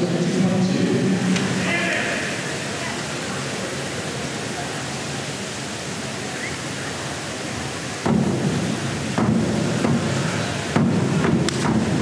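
Echoing indoor pool hall: steady crowd chatter over a wash of noise. About two-thirds of the way through, sharp knocks begin as a diver runs the springboard and takes off, and he goes into the water near the end.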